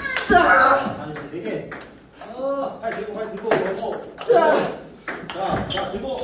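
Table tennis balls being struck in a multiball drill: quick sharp clicks of the ball off rubber-faced paddles and bouncing on the table, one after another.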